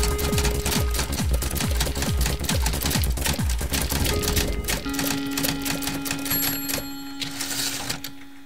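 Typewriter clacking sound effect over music with low drum thumps, the clacks going fast for about the first five seconds. A held low note then takes over and fades out toward the end.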